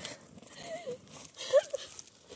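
A woman crying: short, high, wavering sobs, with dry leaves crackling under her as she kneels.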